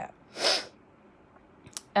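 A woman's single short, sharp breath noise about half a second in.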